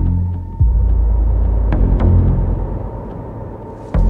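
Trailer sound design: a deep rumbling bass drone under dark score, with a sudden low hit about half a second in and another near the end.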